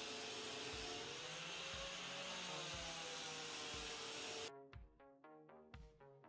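Angle grinder with a sandpaper disc sanding a plywood beam, a steady hiss with a faint wavering whine, kept low under background music. The grinder cuts off suddenly about four and a half seconds in, leaving only soft music with distinct notes.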